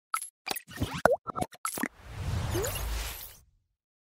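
Logo intro sound effects: a quick run of short pops and plops, one sliding down in pitch, followed by a low whoosh that swells and fades out about half a second before the end.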